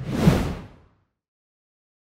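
A whoosh transition sound effect: one rush of noise with a low boom under it, swelling and fading away within about a second.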